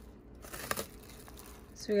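Plastic cling wrap crinkling faintly in a few short bursts as it is lifted back from a bowl of green beans.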